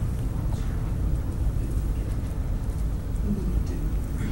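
Steady low rumble of basketball game ambience in a school gym, with a few faint knocks.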